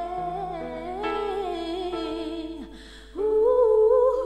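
A woman's voice humming wordless held notes with vibrato over steady sustained chords. It fades briefly about three seconds in, then comes back louder on a long held note.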